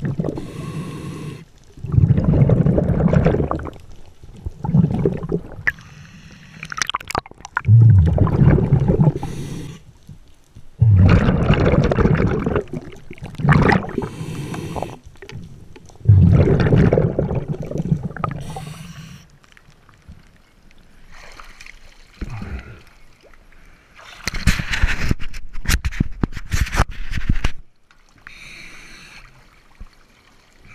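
Scuba regulator heard underwater: exhaled breaths bubbling out of the exhaust in gurgling bursts every few seconds, with quieter hisses between them.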